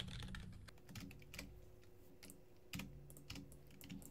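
Faint computer keyboard typing: scattered key clicks, the strongest group a little under three seconds in.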